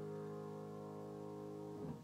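Grand piano holding a low, full chord that slowly dies away, then is cut off near the end as the keys and sustain pedal are released, with a soft knock.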